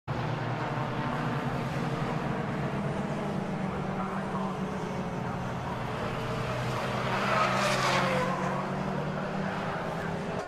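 Citroën 2CV race cars' air-cooled flat-twin engines running on the circuit as a steady drone, with one car passing close about seven seconds in, its pitch falling as it goes by.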